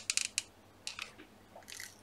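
A few faint, short crisp clicks and crinkles from a small paper flower being handled and hot-glued, clustered in the first half second, with a couple more about a second in.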